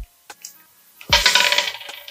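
A small white die thrown onto a round wooden stool top: a single click, then about a second of clattering as it tumbles to rest.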